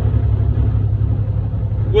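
Steady low rumble inside a truck's cab: the engine and road noise of the truck under way.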